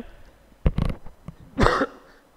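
A man coughing twice, the coughs about a second apart.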